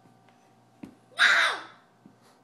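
A toddler's short, loud, raspy shriek lasting about half a second, preceded by a single click.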